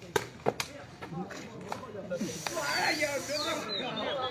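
Three sharp knocks of a sepak takraw ball being kicked, all within the first second, followed by players' voices calling out.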